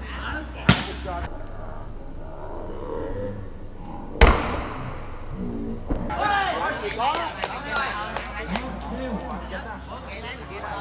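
A volleyball being struck hard by hand during a rally: a sharp smack about a second in and a louder one near the middle, then several lighter hits in the last few seconds. Voices of players and spectators shout and chatter around the hits.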